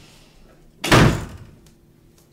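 A door slammed once: a single loud bang about a second in, dying away quickly.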